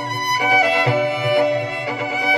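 Violin quartet of four layered violin parts, bowed chords changing about every half second, over a low pulsing electronic bass beat.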